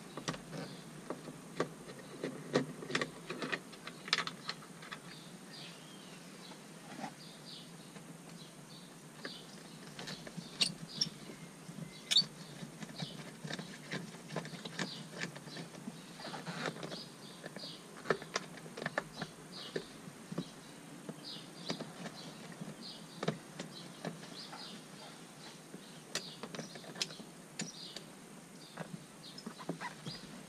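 Phillips screwdriver backing screws out of a 2003 Nissan Pathfinder's plastic door trim panel: scattered small clicks and taps of the tool on the screws and plastic, some sharper than others, with faint short high chirps in the background.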